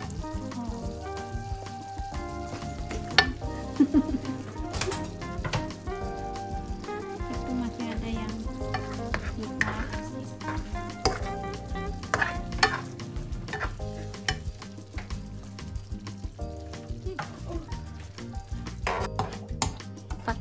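Chicken simmering and sizzling in coconut-milk curry in a non-stick pan while a plastic spoon stirs it, with scattered clicks and scrapes of the spoon against the pan, over background music.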